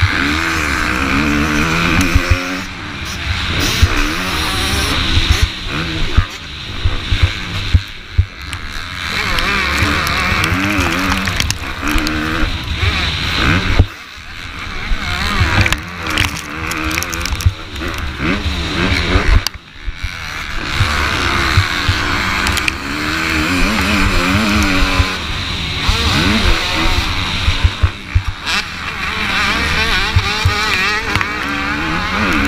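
Motocross bike engine revving hard and backing off over and over, its pitch climbing and falling through the corners and straights, with a heavy rumble of wind and knocks from the rough track on the onboard camera's microphone. The engine note drops away briefly three times.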